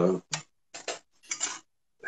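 A man's hesitant 'uh' trailing off, then three short clipped sounds with dead silence between them.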